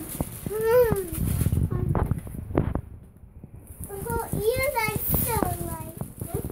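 A young child's voice making short high-pitched vocal sounds, not words, in two bursts: one near the start and a longer one in the second half. In between there is a low rumbling noise with a few knocks.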